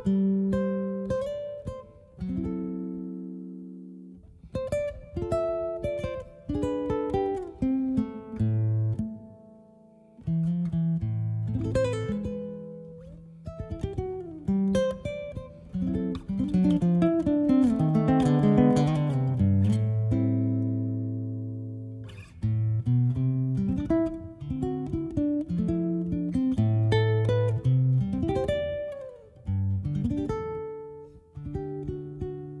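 Solo nylon-string classical guitar played fingerstyle: single plucked notes and arpeggiated chords that ring out, with a short pause about a third of the way in and a louder run of quickly struck chords past the middle.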